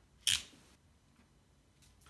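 A single short, sharp click about a quarter of a second in, from handling a coiled charging cable and its wrap, then only faint handling sounds.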